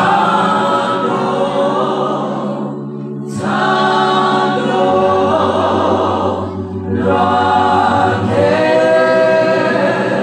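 Worship singing: a man's voice on a microphone leads a group of voices in long held phrases, with two short breaks about three and seven seconds in.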